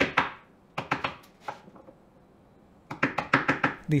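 A small mallet tapping a steel bushing into a drilled hole in a pine board. There are a few separate taps in the first second and a half, then a pause, then a quick run of light taps near the end.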